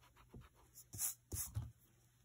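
Pencil scratching on drawing paper in several short strokes, the loudest about a second in, with a few soft knocks of the pencil and hand against the paper.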